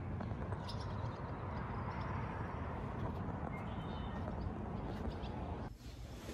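Steady outdoor background noise, mostly low rumble, with a few faint bird chirps a little past halfway.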